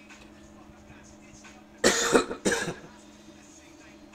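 A man coughs twice into his hand, about two seconds in, over a faint steady hum.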